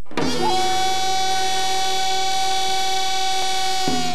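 Korean traditional instrumental accompaniment for the seungmu (monk's dance): one long, held melodic note with a brief bend near its start, framed by a low stroke at its start and another just before the melody moves on.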